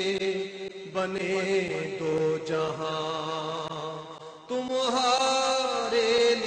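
Chant-like closing-theme music: held, wavering melodic notes in phrases, a new phrase coming in about a second in and a louder one after a short dip about four and a half seconds in.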